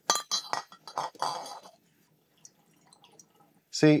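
Stainless steel funnel clinking against the neck of a glass gallon jug as it is set in place: several short clinks in the first second and a half.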